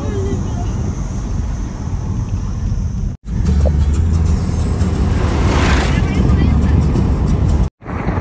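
Steady road and engine noise inside a moving car, cut into two stretches: a quieter one for about three seconds, then after a sudden break a louder, deeper one that stops abruptly near the end.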